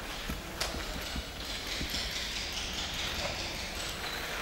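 A folded piece of card pushed and scraped through wet paint on rough pavement, a steady scratchy rasp with scattered light knocks.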